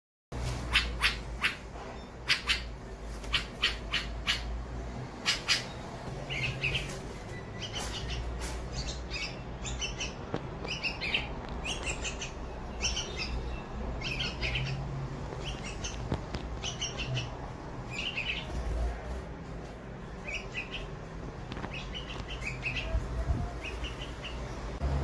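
White-spectacled bulbul fledglings squawking to beg as an adult feeds them. A run of sharp, loud calls comes in the first five seconds or so, then short chirps repeat about once a second.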